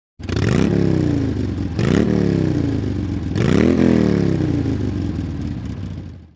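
An engine revved three times: each rev climbs quickly in pitch and then slowly winds down.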